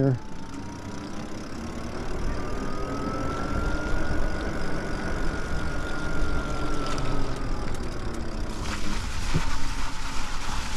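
Lyric Graffiti e-bike's electric motor whining, the pitch rising as the bike speeds up and falling as it slows, over steady wind and tyre noise on the wet path. The hiss turns brighter near the end.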